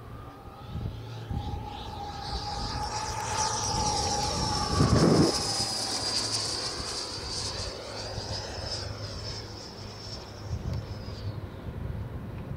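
Schubeler 120 mm electric ducted fan on a Sebart Avanti XS RC jet, giving a high whine as the jet makes a fast pass. It is loudest about five seconds in, drops in pitch as it goes by, then fades.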